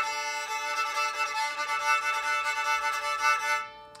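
Homemade cigar box violin bowed on open strings: one long, steady note that stops shortly before the end.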